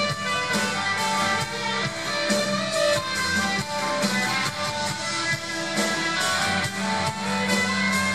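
Live rock band playing an instrumental passage without singing, with electric guitar, acoustic guitar and electric bass.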